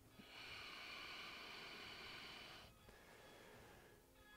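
A person's slow, faint exhale, lasting about two and a half seconds and stopping a little before three seconds in.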